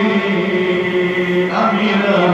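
A man's voice chanting in long, held notes, with a new phrase starting about one and a half seconds in.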